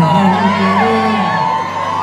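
A live reggae band's sustained closing chord and bass dropping away about halfway through, under a crowd cheering and whooping.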